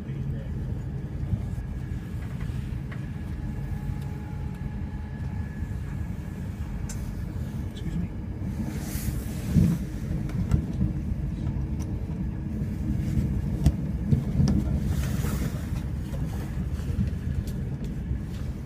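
Steady low rumble of an express passenger train running at speed, heard from inside the carriage, with scattered clicks from the wheels on the track. A brief rushing hiss comes about halfway through and again a few seconds later.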